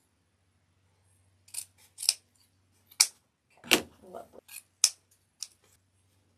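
Scissors snipping through fabric ribbon: a string of short, sharp cuts beginning about one and a half seconds in, with some ribbon rustling between them.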